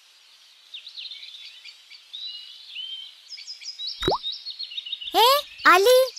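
Birds twittering faintly in a cartoon's background ambience. A sharp plop with a quick rising pitch comes about four seconds in. A child's high voice calls out twice, rising in pitch, near the end.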